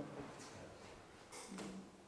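A quiet pause in a talk: faint room tone with a couple of soft breaths and a brief low murmur from the speaker about one and a half seconds in.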